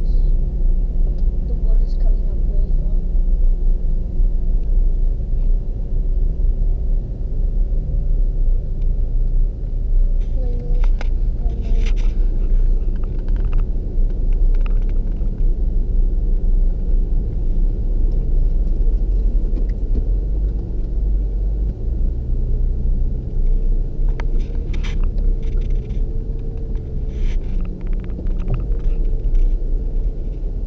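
Land Rover Discovery 3 driving on beach sand, heard from inside the cabin: a steady, loud, low rumble of engine and tyres, with a few brief sharp noises over it.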